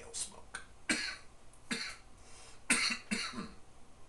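A man coughing in three bursts, the longest near the end, clearing smoke from his lungs after a hit from a pipe.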